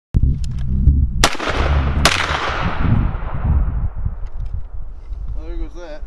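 Two shots from a SCAR 17 rifle, a little under a second apart, each followed by a long fading echo, over a low rumble.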